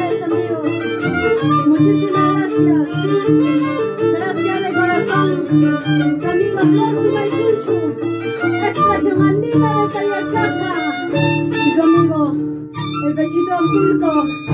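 Live Andean string music: a violin playing a fast, lively melody over harp accompaniment with a steady bass line.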